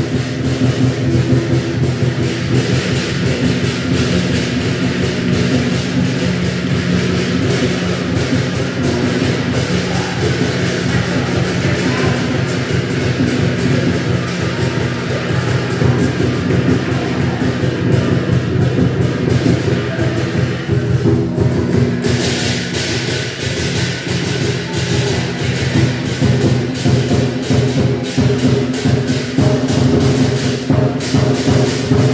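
Lion dance percussion: a drum beaten in fast, continuous strokes with cymbals and a gong ringing underneath. The cymbals grow brighter about two-thirds of the way through.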